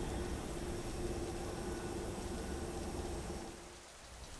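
A steady hum with a few held tones, fading out shortly before the end.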